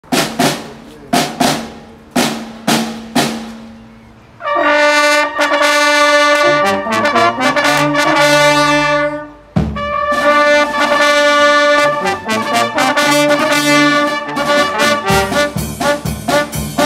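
Small street wind band of brass, clarinets, saxophone and drums. It opens with a series of separate drum strikes, then sounds one long held chord from about four seconds in, and near ten seconds in breaks off and sets into a tune with a steady drum beat.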